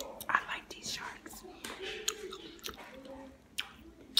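Close-miked chewing of a soft blueberry shark gummy candy: irregular sharp mouth clicks and smacks.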